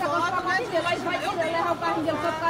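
Several people talking over one another in a heated street argument; voices run on without a break.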